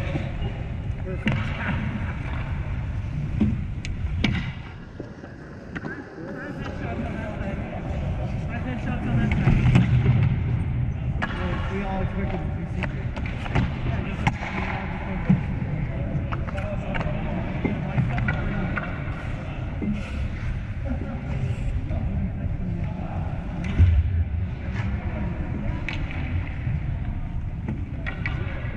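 Ice hockey rink sound: skates scraping the ice, sticks and pucks clacking, and indistinct players' voices. The loudest moment is a sharp knock late on.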